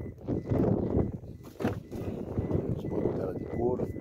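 Mostly speech: a voice talking in short phrases that the transcript did not catch.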